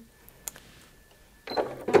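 Bernette B38 computerized sewing machine making a short needle cycle on its needle up/down button, the motor and needle bar starting about one and a half seconds in to pick up the bobbin thread. A faint click comes about half a second in.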